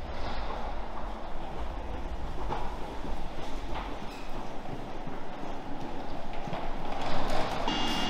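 Railway station ambience: a steady, noisy rumble with a few faint knocks from people walking. Near the end, the steady high whine of a train standing at the platform comes in.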